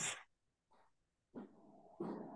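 A person's voice trailing off at the end of a word, then a pause of near silence, then a faint, low voiced sound or breath starting about one and a half seconds in, just before speech resumes.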